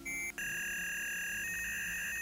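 Electronic sound effect of a cartoon scanning machine at work: a short beep, then a long, steady electronic tone that warbles briefly partway through.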